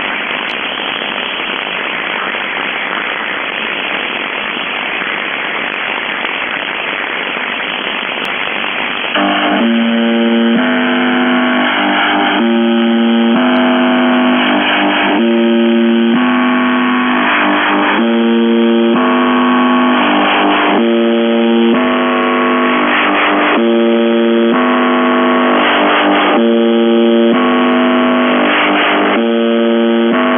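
Shortwave receiver hiss on 4625 kHz. About nine seconds in, a loud signal comes up through the static: a repeating run of sustained electronic tones that step between several pitches.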